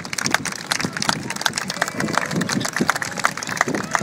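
A small group of people clapping, the claps uneven and scattered, with voices in the background.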